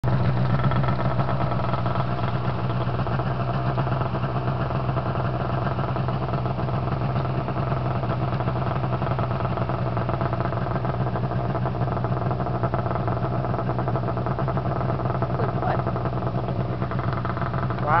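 Snowmobile engine running steadily at an even pitch.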